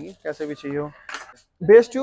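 A man speaking in short phrases, with a brief metallic clink about a second in.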